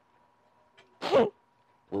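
A single short, loud vocal outburst from a person about a second in, falling in pitch, over a faint steady hum.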